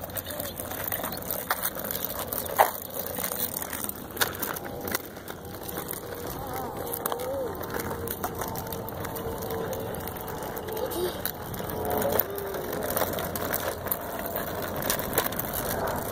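Small tricycle's wheels rolling over rough, cracked asphalt: a steady gritty rumble with scattered clicks and knocks as the wheels go over bumps and cracks.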